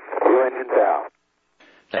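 Speech only: a brief, narrow, tinny air-to-ground radio voice transmission lasting about a second, then a short gap, then a man starts speaking near the end.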